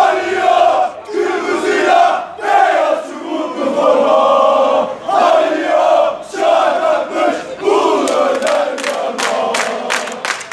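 A group of football supporters chanting together in loud, rhythmic shouted phrases, about one a second. Near the end, hand-clapping joins in.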